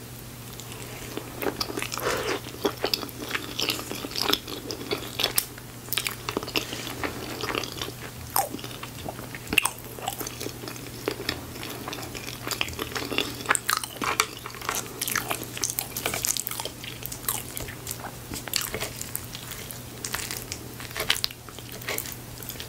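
Close-miked chewing of a mouthful of chili cheese fries: a continuous run of small crackling clicks and mouth noises. A steady low hum runs underneath.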